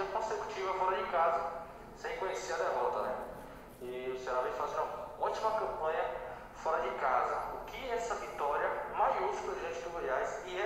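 Speech only: a reporter's question, quieter than the coach's own voice.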